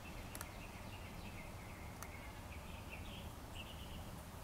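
Low background with faint, high, wavering chirps and a couple of soft, sharp clicks.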